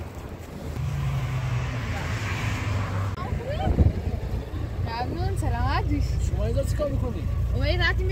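Car engine idling steadily, with people talking over it from a few seconds in.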